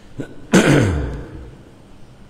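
A man clearing his throat once, loud and close to the microphone, its pitch falling as it dies away.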